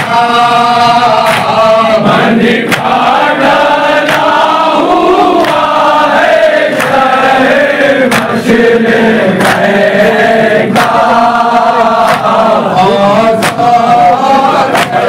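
A group of men chanting a noha, a Shia lament, in unison. Sharp slaps of hands striking chests (matam) keep time about every second and a half.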